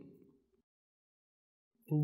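Near silence: a pause in a man's speech, with the end of one word fading out at the start and the next word beginning at the very end.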